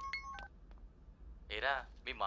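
A few short electronic beeps in the first half-second, then a low steady hum, and a voice begins speaking near the end.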